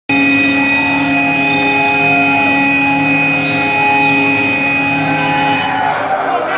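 A loud sustained drone of several steady tones from the stage sound system, with a few brief pitch glides through it. It stops about half a second before the end.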